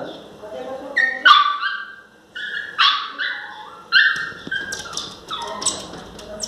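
Miniature pinscher whining and yelping in short, high-pitched cries, about eight of them spaced roughly a second apart.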